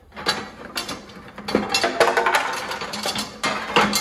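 Metal parts clanking and scraping as a hand rummages through a plastic bucket of hardware and pulls out bent steel mounting brackets, an irregular run of clatters and knocks throughout.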